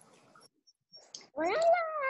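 Faint room noise with a few soft clicks, then about one and a half seconds in a voice starts singing a sustained "la" that glides up in pitch and holds.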